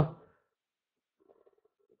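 A man's voice trails off at the very start, followed by a pause of near silence.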